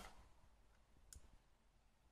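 Near silence with one faint, short click about a second in.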